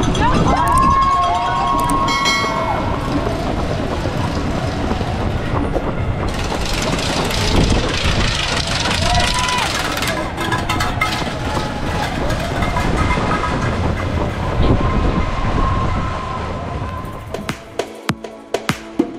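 A crowd of runners at a road race start: many feet on the street and spectators' voices and shouts, over a steady low rumble of wind and movement on a running action camera's microphone. Music comes in near the end.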